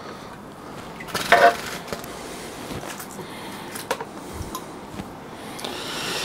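A fish net being worked in a glass aquarium: a few light clinks and knocks over a steady low hiss, with a short louder scrape just over a second in.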